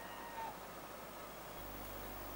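Faint murmur of a large outdoor crowd, with a short high-pitched cry from somewhere in it about half a second in.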